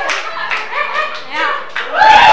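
A group of people clapping along to a song, with voices singing over the clapping.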